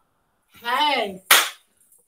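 A woman's short wordless exclamation, her voice rising then falling in pitch, followed by a single sharp clap about a second and a half in.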